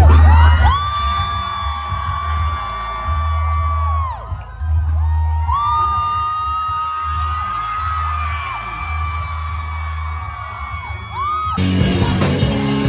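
Live punk-rock show: the crowd yells and whoops as the band takes the stage, over loud music with two long held high notes of about three seconds each. The sound changes abruptly near the end.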